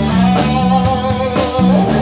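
A live rock and roll band playing an instrumental stretch: an electric guitar line over bass guitar and drums.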